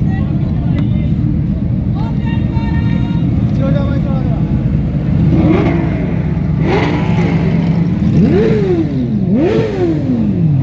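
Audi R8 engine running with a steady low rumble, then revved in several blips over the second half, its pitch climbing and dropping each time. The last and biggest rev falls away near the end.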